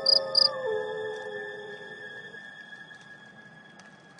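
A synthesized sound-effect sting of several held tones with a pulsing high beep. The beep stops about half a second in, and the tones then drop in pitch and fade away.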